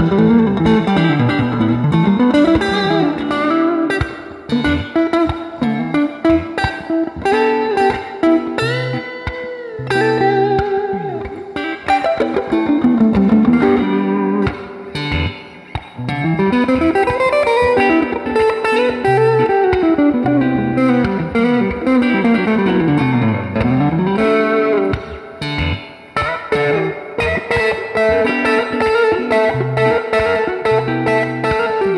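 Fender Jazzmaster electric guitar played clean through an amp: a melody line whose notes glide down and back up, over a repeating low note pattern, with a few short breaks.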